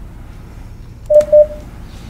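Two quick beeps from a telephone line over the room's speakers about a second in, each a single steady tone.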